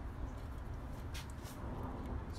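Faint handling noise as an electric guitar's bolt-on neck is set back into the body's neck pocket, with a couple of light clicks near the middle.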